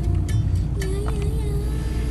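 Steady low rumble of a car driving, heard from inside the cabin, with music playing over it: a wavering held tone and light clicks.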